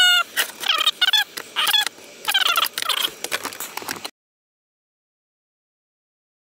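A dog whining in a run of short, high-pitched whimpers that bend up and down in pitch; the sound cuts out completely about four seconds in.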